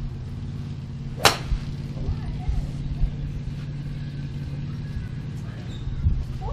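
A single sharp crack of a golf club striking a ball, about a second in, over the steady low hum of a vehicle engine.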